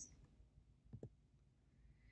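Near silence: room tone, with one faint short click about a second in.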